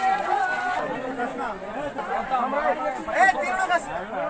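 A group of women's voices talking over one another, several at once, with no single voice standing out.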